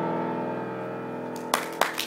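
Grand piano's final chord ringing out and slowly fading, with the piano's steady sustained tones; about three quarters of the way in, audience applause breaks out with a patter of clapping.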